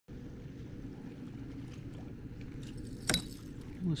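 A steady low rumble, with one sharp knock about three seconds in; a man starts to speak at the very end.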